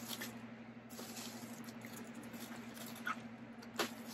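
Faint crinkling and light scratching of bubble wrap being picked at and slit with a box cutter, with a couple of sharper small clicks near the end, over a steady low hum.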